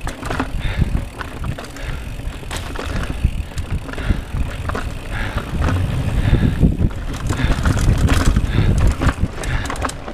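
Mountain bike riding fast down a dirt singletrack trail. The tyres rumble over the ground and wind buffets the microphone, with frequent short clicks and rattles from the bike over the rough ground. It gets louder in the second half.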